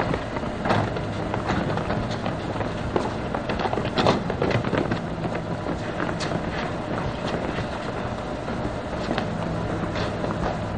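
Steady low hum of a stopped high-speed train at a station platform, with scattered footsteps and light knocks throughout.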